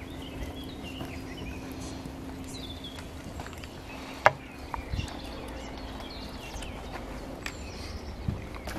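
Quiet woodland ambience with faint scattered birdsong. About four seconds in comes one sharp clack of a steel kitchen knife set down on a wooden cutting board, then a few softer cutlery clicks.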